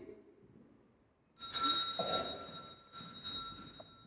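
Altar bells rung at the elevation of the chalice: a few shakes starting about a second and a half in, the high ringing fading away near the end.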